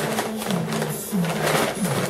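Brown kraft paper rustling and crinkling as it is folded by hand around a soft bundle of clothing.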